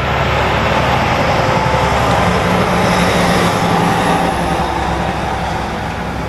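Loud, steady noise of a passing vehicle with a low engine hum, at its loudest through the middle and easing off near the end.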